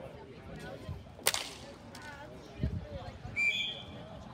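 A single sharp crack about a second in, a ball hockey stick striking the plastic ball, then near the end a short high whistle blast from the referee.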